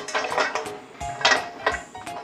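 A whole snow crab's shell and legs knocking and scraping against a metal steamer pot as it is pushed in, in several light, irregular clanks.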